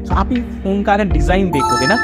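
A man talking fast over background music; about one and a half seconds in, an electronic chime like a phone ringtone comes in, several steady high tones held together.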